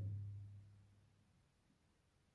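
Near silence: room tone, with the end of a man's word fading out in the first second.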